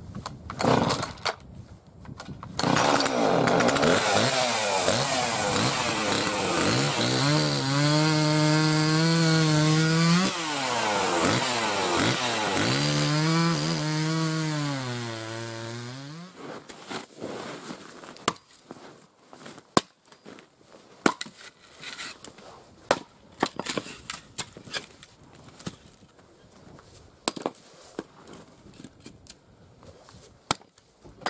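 Two-stroke chainsaw running at high revs and cutting through a log. Its engine note drops twice as the chain bites into the wood, and it stops about 16 seconds in. Scattered sharp knocks follow.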